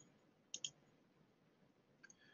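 Near silence broken by two faint, quick clicks about half a second in.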